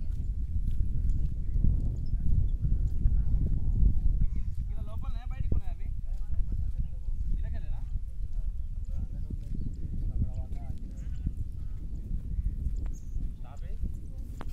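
Steady low rumble on the phone's microphone while walking on a dirt path, with footsteps and faint voices in the distance.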